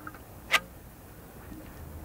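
A single sharp click about half a second in, over a faint steady background.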